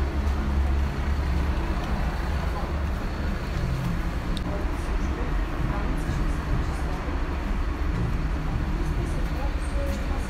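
Low, steady engine rumble of a bus at a station, loudest in the first second, over a haze of traffic noise.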